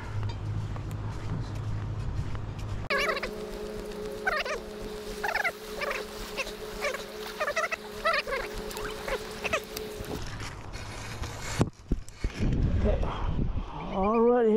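Animal calls: a run of short, wavering cries repeated over about seven seconds against a steady low hum. Knocks and rustling follow near the end.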